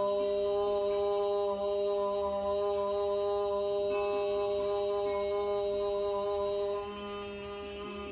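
A woman chanting a mantra on one long held note, which ends about seven seconds in, over soft background music.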